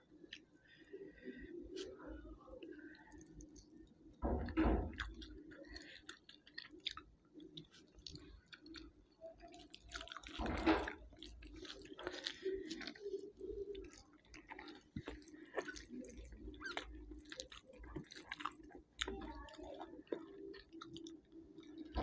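Close-miked mukbang eating sounds: chewing and wet mouth clicks as rice and fish curry are eaten by hand, with the squish of fingers working the rice. Two louder bursts come about four and a half seconds in and near eleven seconds, over a low steady hum.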